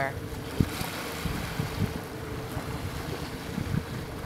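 Outdoor field sound over open water: wind buffeting the microphone with a low rumble and a faint steady hum, and a single knock about half a second in.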